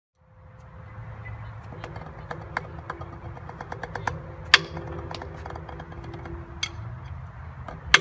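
Drumsticks striking a drum practice pad in a short rudiment lick: a run of soft taps with a few sharp accents, the loudest about halfway through and just before the end. A steady low hum runs underneath.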